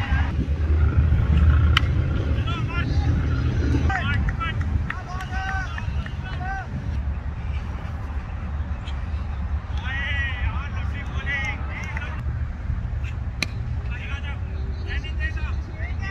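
Distant men's voices calling out across a cricket field over a steady low rumble, with a couple of sharp knocks, one about two seconds in and one near the end.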